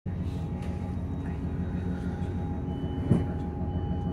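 Inside a Class 158 diesel multiple unit standing at a platform: the underfloor diesel engine idles with a steady low hum. A high, steady tone comes in past the halfway point, and there is a single knock about three seconds in.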